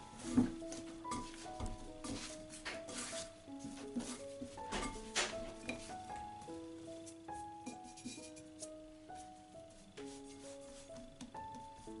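Background music with a simple melody of held single notes, over irregular soft thumps and slaps of bread dough being kneaded by hand in a ceramic bowl, the loudest about half a second in and again around five seconds.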